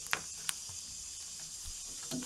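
Kitten's paws and claws scratching at a fabric computer mouse pad, giving a couple of faint clicks in the first half second over a quiet steady hiss.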